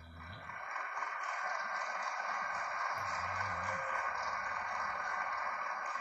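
A steady, even hiss that swells in over the first second and then holds level.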